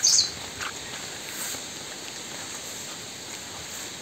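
A wild bird gives one short, loud, high call right at the start, then a few faint high chirps follow over a steady forest hiss.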